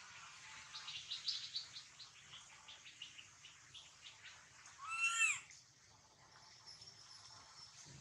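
Baby macaque giving one loud cry about five seconds in: a single half-second call that rises and falls in pitch. Before it comes a quick run of softer, high chirps.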